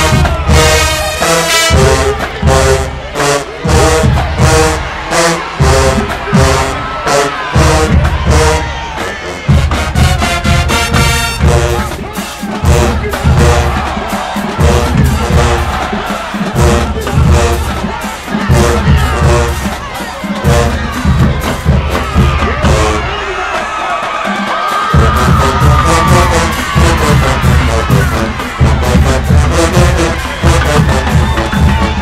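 Marching band's brass section and drumline playing a hip-hop arrangement, with loud, repeated low drum hits under the horn lines. A crowd cheers along.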